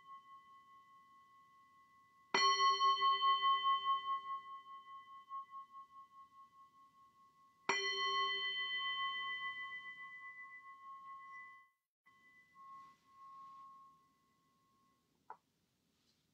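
Metal singing bowl struck twice, about five seconds apart, each strike ringing on with a slow pulsing wobble as it dies away; the tail of an earlier strike is fading at the start. The ring cuts off abruptly about two-thirds of the way through, and a small knock follows near the end.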